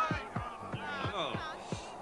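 A rapid run of dull thuds, about five a second, each dropping in pitch: boxing-glove punches landing.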